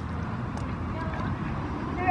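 Faint background voices over a steady low rumble.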